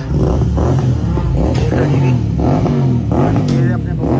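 A motor vehicle engine running close by, with a steady low rumble and men's voices over it.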